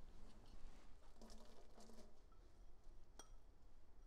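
Faint kitchen handling sounds: soft rustling and light ticks as grated cheese is pushed together and moved in a ceramic bowl. A single sharp clink with a short ring a little over three seconds in, as the bowl touches the cookware.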